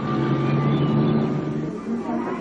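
Cartoon sound effect of a small car's engine running: a steady low hum that dies away shortly before the end.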